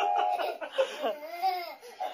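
A toddler and a man laughing together, with a steady held tone that stops shortly after the start.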